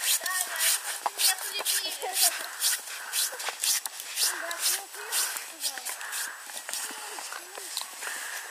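Children's voices talking, not close to the microphone, over footsteps crunching in snow, a few steps a second.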